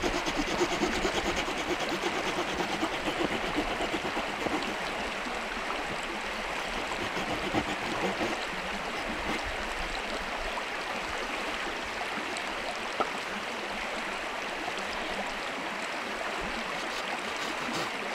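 Steady rush of flowing stream water, with a man laughing briefly at the start and a single sharp click about two-thirds of the way through.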